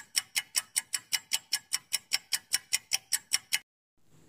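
Countdown-timer sound effect: fast, even clock ticks, about six a second, that stop sharply about three and a half seconds in.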